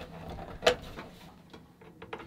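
Hands handling plastic network equipment and an Ethernet cable, with one sharp plastic click a little under a second in.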